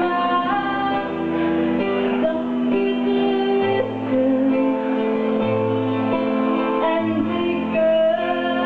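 Live band music with guitar to the fore over a changing bass line, with a woman singing into a microphone.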